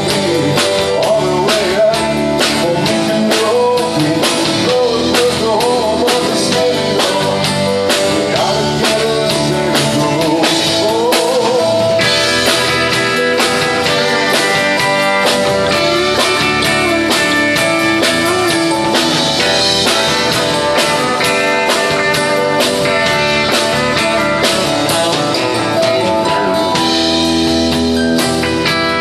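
Live country-rock band playing: acoustic and electric guitars, bass guitar and drum kit, loud and continuous.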